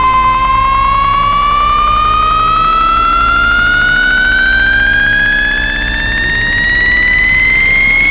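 Synth build-up in a Scouse house dance track: one bright pitched tone climbs steadily in pitch, with a rapid pulse, over a steady low bass.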